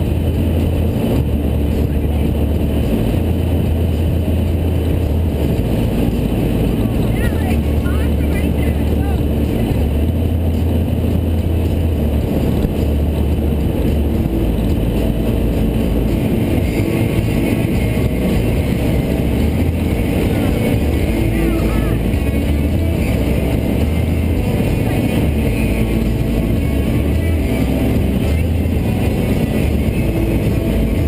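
Bowrider motorboat cruising on open water: steady engine and water noise with a heavy low rumble that holds at the same loudness throughout.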